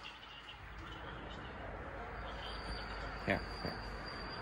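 Quiet street ambience: a low steady hum and murmur, with a faint steady high whine coming in about halfway through and one short sound shortly before the end.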